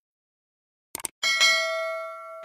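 A quick double mouse click about a second in, followed at once by a bell ding with several high ringing tones that slowly fades: the subscribe-and-notification-bell sound effect.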